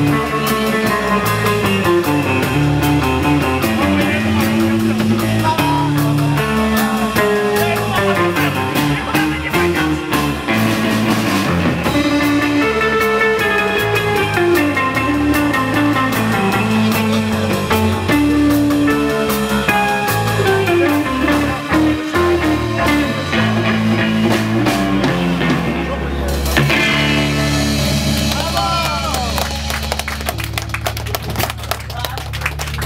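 Live rock band playing with electric guitars and a drum kit, heard from the audience. Near the end the drumming stops and a chord rings out with wavering, bending guitar notes as the song finishes.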